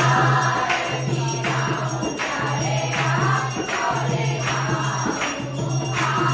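Devotional aarti hymn sung by a group, with a jingling percussion beat about every three-quarters of a second.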